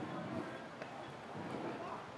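Faint, indistinct voices murmuring, with a couple of soft ticks.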